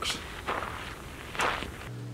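A few faint footsteps with a low wind rumble. Near the end this gives way to a steady low hum.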